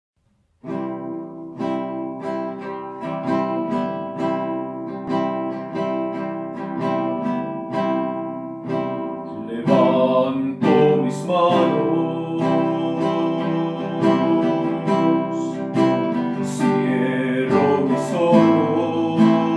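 Acoustic guitar strumming the instrumental introduction of a Catholic praise song, starting about half a second in with evenly repeated strums. The music grows fuller and louder from about ten seconds in.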